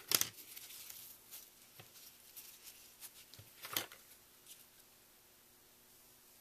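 Small scissors and ribbon being handled while trimming a notched end on the ribbon: quiet rustling with a sharp click at the very start and another just under four seconds in.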